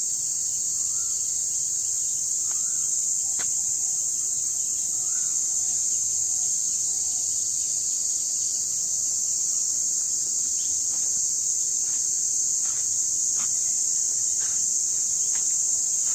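Steady, high-pitched drone of insects, crickets or cicadas, with a few faint bird chirps in the first seconds and some light clicks later on.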